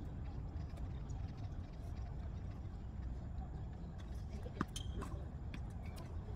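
Tennis ball struck by a racket during a rally: a sharp pop about four and a half seconds in, with a few fainter clicks around it, over a steady low background rumble.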